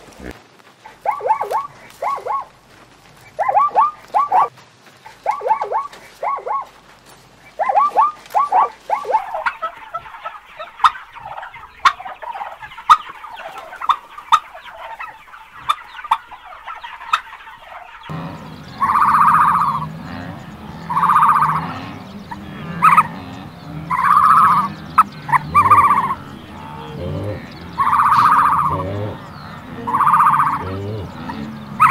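Domestic turkeys gobbling and calling: a string of repeated calls, with louder, longer gobbles coming every second or two in the second half.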